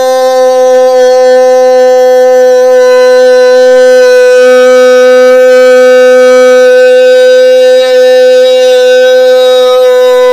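A man's voice holding one loud, steady sung "oh" tone at a high, unchanging pitch.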